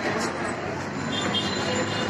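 Busy street ambience: a steady wash of traffic noise from buses and other road vehicles, with people talking faintly in the background.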